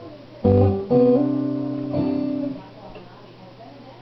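Acoustic guitar strummed: three chords, each ringing on, the last fading out about two and a half seconds in, leaving only faint room sound.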